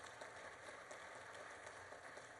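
Near silence: faint, even room noise in a large hall.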